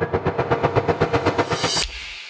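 TV channel ident soundtrack: a rapid electronic stutter of beats, about ten a second, ending in a bright crash near the end that rings away.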